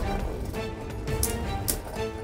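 Two Beyblade Burst spinning tops whirring and clacking against each other in a plastic stadium, with several sharp clicks from their collisions, under background music.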